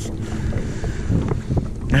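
Strong wind buffeting the microphone: a steady low rumble.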